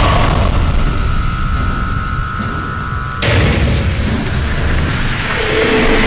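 A deep rumbling boom with a steady high tone over it, then a sudden loud rush of noise about three seconds in, the rumble carrying on beneath.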